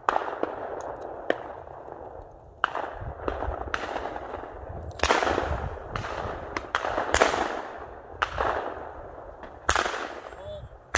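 Shotgun shots on a clay course: about five sharp reports a couple of seconds apart, each trailing off in a long echo. The loudest come about five and seven seconds in.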